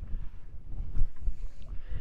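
Wind buffeting the microphone, an uneven low rumble that surges and drops, loudest about a second in.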